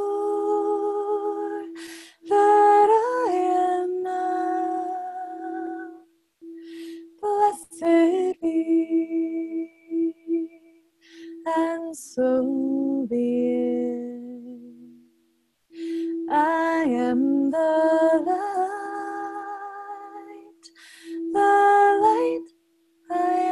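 Clear crystal singing bowl rubbed around its rim with a wand, holding one steady pulsing tone that drops out briefly twice. A woman sings wordless phrases over it, her voice gliding up and down, with pauses between phrases.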